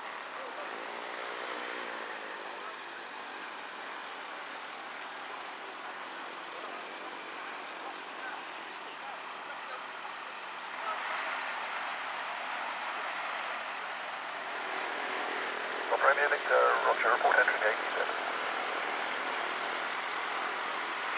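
Light propeller aircraft engine running steadily in the background, growing louder about eleven seconds in. A short burst of voice comes through near the end.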